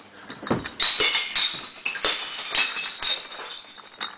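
Glass bottles clinking and breaking inside a glass-recycling bottle bank: a rapid series of sharp clinks with ringing, several a second.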